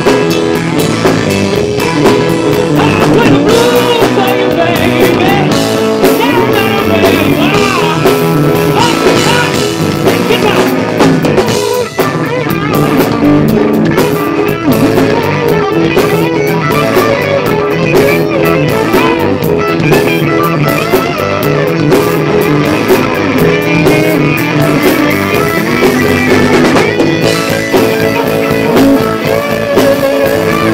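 Live blues-rock band playing an instrumental stretch: electric guitar over bass guitar and drum kit.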